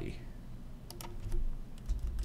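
Computer keyboard keystrokes: a short run of key clicks from about a second in, typing a name into a text field.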